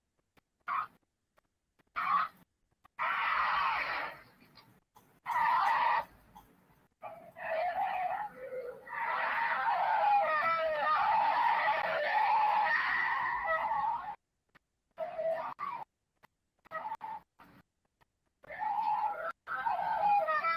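Snarling and growling of a cougar and a bear from a nature film clip played over a video call, cutting in and out in short bursts with one longer unbroken stretch in the middle.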